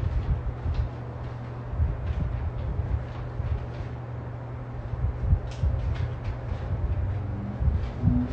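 Unattended room noise: a steady low hum with irregular low bumps and a few faint clicks from someone moving about out of sight.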